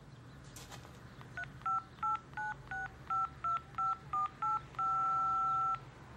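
Touch-tone (DTMF) keypad beeps from a phone: about ten quick two-tone keypresses keying in an account code, then one two-tone beep held for about a second.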